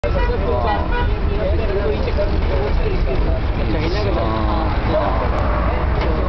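Steady low rumble of a moving vehicle and street traffic, with people talking over it.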